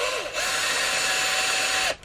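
Ryobi cordless drill running a carbide-insert outside chamfer bit while a round rod is pushed into it by hand: the motor winds up, then holds a steady whine with cutting noise for about a second and a half before stopping suddenly. The bit is cutting well, leaving a clean chamfer.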